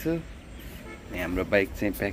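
A man talking, with a short pause in the middle.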